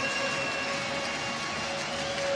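Ice hockey arena crowd noise with a long, steady held note over it, one pitch with fainter overtones.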